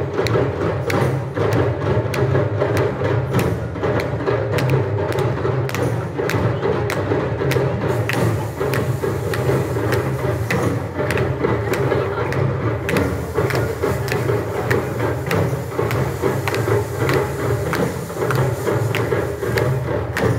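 Children's drum ensemble playing live: Sri Lankan thammattam and other hand and stick drums beating a steady rhythm, with the strokes growing denser and sharper about eight seconds in.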